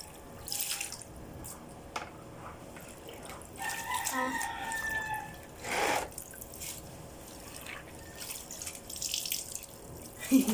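Water sloshing and splashing as clothes are washed and wrung out by hand over plastic basins, with a louder splash about six seconds in.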